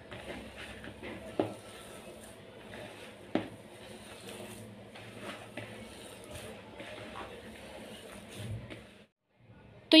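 A hand kneading and squeezing a moist shredded chicken, cheese and spice mixture in a bowl: faint, soft squishing and rustling, with two sharper knocks about a second and a half and three and a half seconds in.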